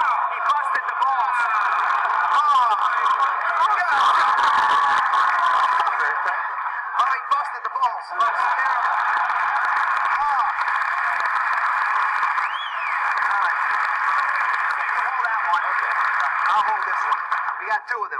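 Studio audience laughing and chattering over one another, many voices at once in a steady mass, heard thin and band-limited.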